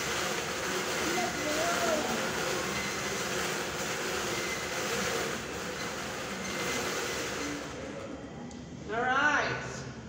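Bingo balls tumbling and rattling in a hand-turned wire bingo cage, a steady rattle that stops about eight seconds in. A woman's voice follows near the end.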